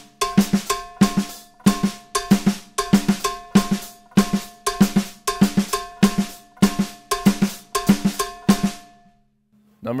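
Drum kit played in a steady, repeating Latin pattern of quick strokes on snare and drums: quarter notes broken up in groups of two against rumba clave. The pattern stops about nine seconds in.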